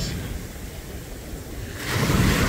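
Small waves washing on the beach, with wind rumbling on the microphone. The wash dips a little, then swells again shortly before the end.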